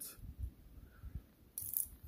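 Faint handling sounds of a stainless steel watch bracelet being worked with a small screwdriver to back out a link screw: light knocks and rustles, with a brief sharper sound near the end.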